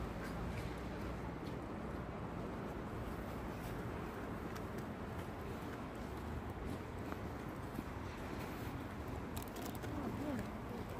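Steady outdoor city background noise: an even low rumble with a few faint clicks over it.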